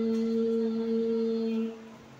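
A Qur'an reciter's voice, amplified over a PA system, holding one long steady note in melodic tilawah recitation; the note ends about a second and a half in.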